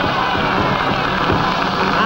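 Live rhythm and blues band playing in the gap between two sung lines, the drums marking the beat through the full band sound.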